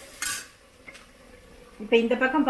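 A steel spoon scraping once against a black iron kadai while stirring diced potatoes, a short sharp scrape about a quarter second in, then a faint tap about a second in.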